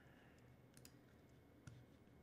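Near silence with a few faint computer mouse clicks, the clearest about one and a half seconds in, as a menu item is picked.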